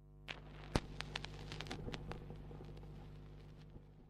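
Surface noise of a shellac 78 rpm record: scattered sharp clicks and crackle over a faint, steady low hum, with one louder click about three-quarters of a second in and a cluster of clicks in the following second.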